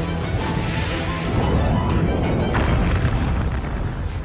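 A rocket exploding in the air: a deep, continuous rumble with a sharp burst about two and a half seconds in, under background music.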